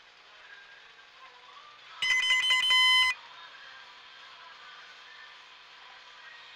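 An electronic beeper or alarm tone, about a second long: rapid pulsing, then a steady tone that cuts off suddenly, over a low steady background hum.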